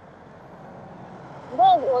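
Low, even background rumble that slowly grows louder for about a second and a half, then a person's voice starts speaking.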